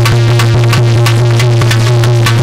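Instrumental music on an electronic keyboard, holding a low sustained note and a steady higher tone over quick, even percussion strokes at about six a second.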